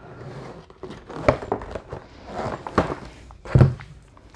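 Cardboard product boxes being handled and shifted inside a large pallet box: about three dull thuds, the last the loudest, over light rustling.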